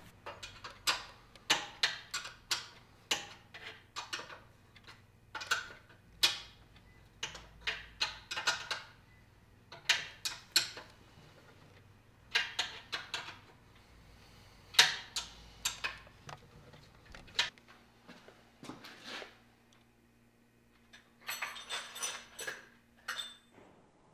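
Irregular metallic clinks and taps from hand work on a wagon part's iron fittings at a workbench, some coming in quick little runs, with a quieter pause late on.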